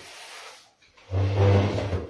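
Wooden chair scraping across the floor as the person sitting on it shifts it, a loud low groan lasting about a second near the end, after a softer rustle of movement.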